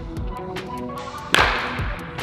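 Background music with a steady beat; about a second and a half in, a single sharp crack of a baseball bat hitting a ball during a batting-cage swing.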